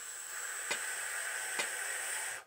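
A long, steady inhaled breath drawn in over four counts, heard as a hiss. A click track ticks at a slow, even beat, twice.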